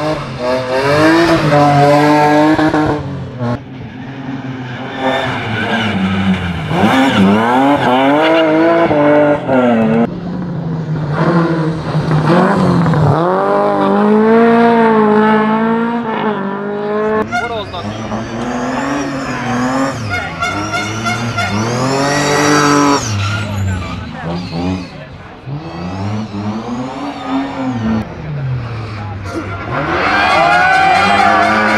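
Rally cars driven hard one after another, engines revving high and dropping back with each gear change.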